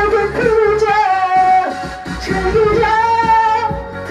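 Korean trot song sung live into a handheld microphone in the original female key, over a karaoke backing track. The voice holds one long note near the end.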